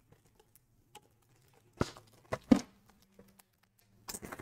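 A few short, sharp clicks and rustles about two seconds in, from trading cards and their plastic holders being handled on a desk.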